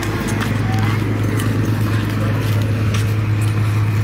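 A small engine drones steadily at one low pitch, with people talking in the street.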